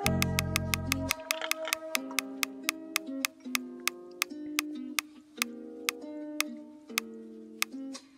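Ticking of an online mystery-box roulette spinner as items pass the pointer: about eight ticks a second at first, slowing steadily to about two a second as the spin winds down, and stopping just before the end. Background music plays underneath, and its bass drops out about a second in.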